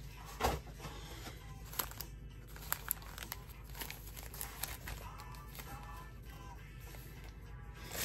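Foil trading-card packs crinkling and clicking as they are handled and stacked on a table, a scatter of short taps in the first few seconds, over faint background music.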